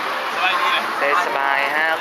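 Speech: people talking, including a man's brief remark, over a steady background noise.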